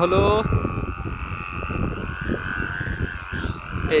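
Humming bow (ḍāk) of a big chong kite droning in flight: a steady high hum that wavers slightly in pitch, over wind rumble on the microphone.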